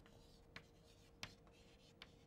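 Chalk writing on a blackboard, faint, with two short taps of the chalk against the board.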